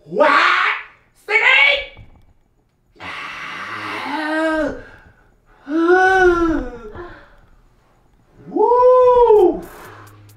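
A person's voice letting out a series of about five drawn-out, exaggerated moans and wails, each rising and then falling in pitch, the last the highest.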